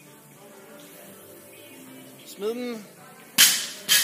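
A loaded barbell with bumper plates is dropped from overhead onto the gym floor. A loud sharp impact comes about three and a half seconds in, and a second hit follows as it bounces. A short shouted call comes shortly before, over background music.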